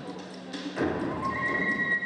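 A sudden burst of noise about a second in, then a high-pitched cry held on one steady note over the dancers' movement.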